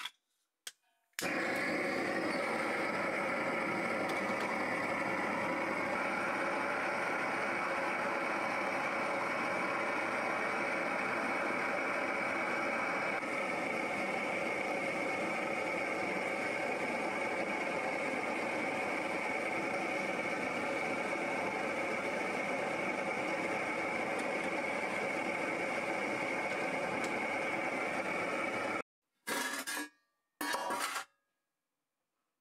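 Gas torch burner running steadily with its flame under a steel pan of liquid. It cuts off suddenly near the end.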